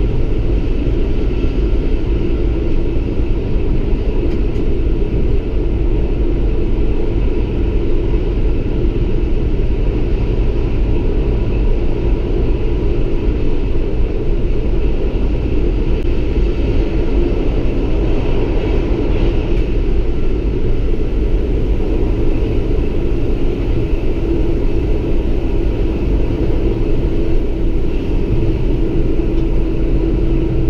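Lint 41 diesel railcar running along the line, heard from inside the driver's cab: a steady rumble with a faint constant hum throughout.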